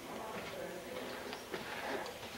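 Faint, indistinct voices of people talking, with a couple of light knocks.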